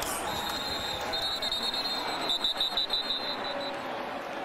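Referees' whistles over a steady stadium crowd din: one held high tone from just after the start, breaking into several short blasts toward the end. The whistles stop play for a false start penalty.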